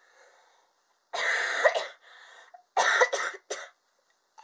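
A woman coughing, a sick person's cough: one long coughing burst about a second in, then two shorter coughs near the end.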